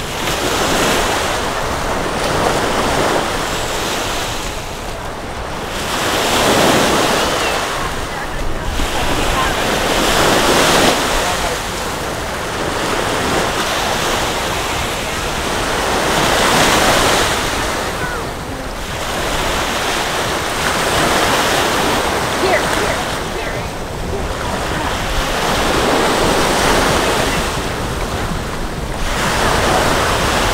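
Small waves breaking and washing up the sand at the water's edge, swelling and falling back about every five seconds.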